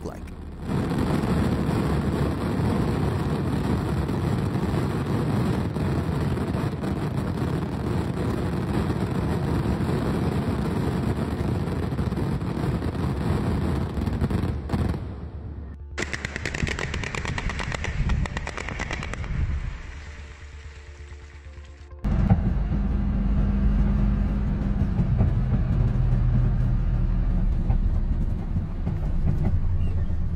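A large mass of fireworks going off at once in a dense, continuous rapid crackle of bangs for about fifteen seconds, then cutting off suddenly. After a quieter stretch, a loud steady low rumbling rush fills the last eight seconds.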